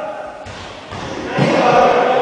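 Players' voices calling and shouting in a sports hall during indoor cricket, with a dull thud or two about half a second and a second in before the shouting swells again.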